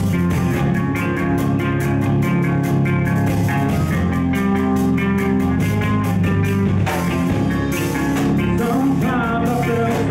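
Heavy metal band playing live: distorted electric guitars and bass holding low chords over a steady, fast drumbeat. A voice comes in near the end.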